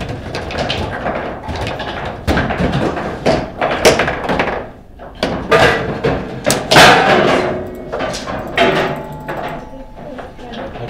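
Foosball table in fast play: a run of sharp irregular knocks and clacks as the ball strikes the plastic players and the table walls and the rods are slammed and spun, with a goal scored partway through.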